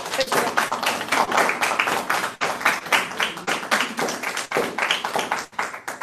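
A small audience applauding in a room: a dense, steady run of hand claps, with voices mixed in.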